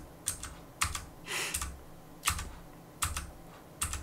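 A few light, irregular computer keyboard key presses, some in quick pairs, with one short breathy hiss about a second and a half in.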